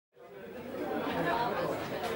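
Many people chattering at once, a crowd of overlapping voices fading in from silence and growing louder over the first second.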